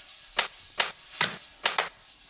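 Sharp, dry clicks in a sparse rhythm, about five in two seconds, the last two close together.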